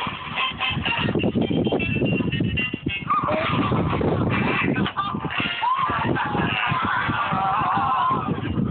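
Pebbles crunching and clattering as a hand scoops and throws stones on a gravel beach, with a few high, wavering calls over it in the second half.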